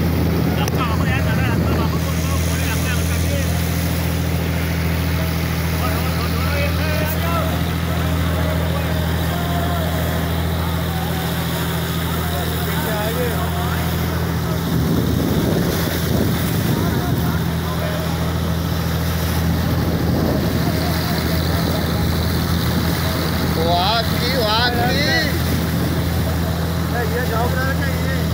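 Boat engine running at a steady speed, a constant low hum, with water rushing and splashing along the bow. Voices are heard briefly near the end.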